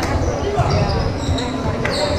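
Gym sounds of a volleyball rally on a hardwood court: sneaker squeaks, the thud of ball contacts, and players' voices calling out, all echoing in the large hall.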